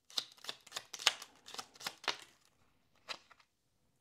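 A tarot deck being shuffled by hand: a quick run of card-edge clicks and flutters for about two seconds. It trails off, with one more click about three seconds in.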